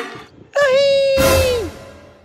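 A long wailing cry held on one pitch, sliding down in pitch near the end, with a loud hissing rush of noise coming in about halfway through.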